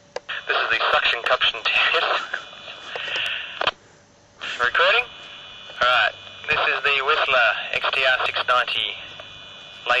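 A man's voice over a handheld two-way radio, in several transmissions with a short break about four seconds in.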